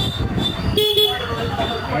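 A vehicle horn gives a short toot about a second in, over steady engine and street noise in heavy two-wheeler traffic.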